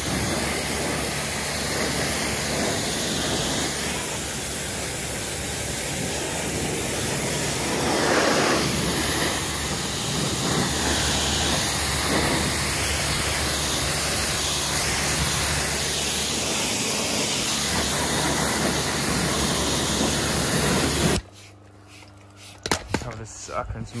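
Pressure washer blasting water onto a downhill mountain bike: a loud, steady hiss of spray over the low hum of the washer's pump motor. It cuts off suddenly about three seconds before the end, leaving a few light clicks.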